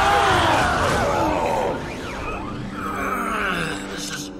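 A loud, drawn-out vocal cry, like a groan or yell, that wavers and falls in pitch over the first couple of seconds, followed by quieter gliding sounds.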